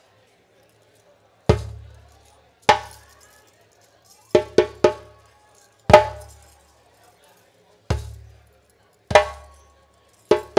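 Solo djembe played with open hands in a sparse phrase. Single spaced strikes each end in a deep booming bass note, with a quick run of three sharper strokes about halfway through.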